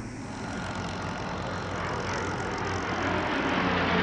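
Aircraft in flight: a steady rushing engine noise that grows gradually louder.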